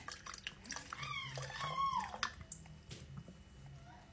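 Breast milk trickling from a pump's collection cup into a baby bottle, with a baby's high squealing call, falling in pitch at its end, about a second in.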